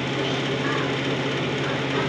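Steady hum of a fan motor, with a low even drone and an airy hiss over it that stays level throughout.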